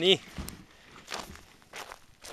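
A short shouted word at the start, then a person's footsteps on grass, one step about every 0.6 s.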